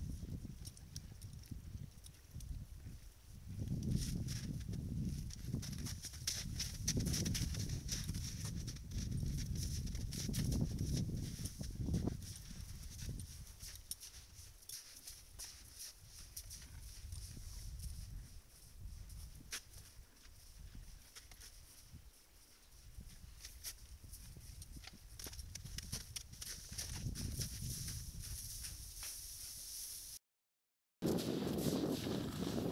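Horses moving about and feeding close to the microphone: hoof steps on wet snow and mud, scattered sharp clicks, and uneven low swells of sound.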